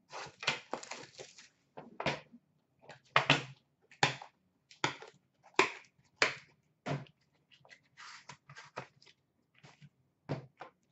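A hockey card box and its metal tin being opened by hand: an irregular run of sharp clicks and knocks, about one or two a second, with a longer rustling scrape about eight seconds in.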